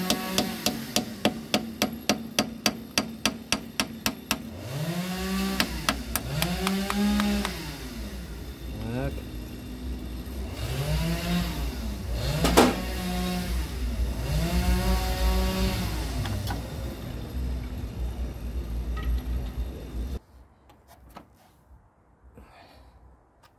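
Rapid, even hammer blows on a chisel held against the forklift engine's water pump mounting, metal striking metal about four to five times a second for the first few seconds.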